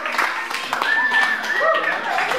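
Audience clapping, with voices calling out over it in the second half.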